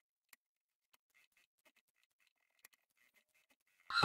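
Near silence with a few faint, sharp ticks and light rustling of fabric being handled. A woman's voice starts right at the end.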